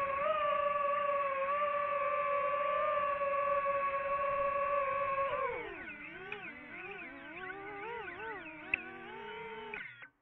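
DJI FPV quadcopter's motors and propellers whining at a steady high pitch. About halfway through, the throttle eases: the whine drops in pitch and level, and the tones of the separate motors wobble up and down as the drone hangs low over the field. The sound cuts off suddenly at the very end.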